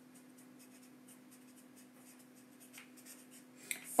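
Faint, irregular light scratching over a steady low hum in a quiet pause between speech.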